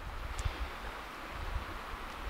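Steady light wind on the microphone in a pine forest, a soft rushing hiss with low buffeting rumble.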